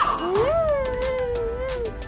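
One long, held voice-like call that rises at first, stays at a steady pitch and falls away near the end, over faint background music.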